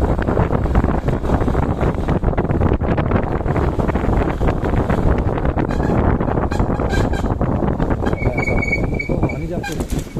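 Motorcycle riding along at night, its engine under heavy wind buffeting on the microphone. There are some knocks and rattles in the second half, and a brief high steady tone a little after eight seconds in.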